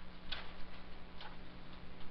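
Two light taps of a stylus on a tablet screen, about a second apart, over a steady low hum.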